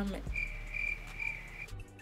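A steady high-pitched trill, slightly pulsing, that starts shortly after the speech stops and cuts off after about a second and a half.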